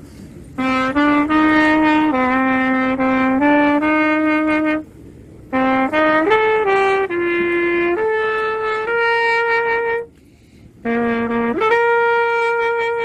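Solo trumpet playing a slow melody of held notes, phrase by phrase, with short breaks between phrases about five and ten seconds in.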